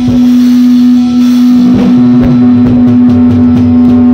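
Live rock band on electric guitar, bass guitar and drum kit: a long note is held throughout, and the drums come in with hits and fills about halfway through.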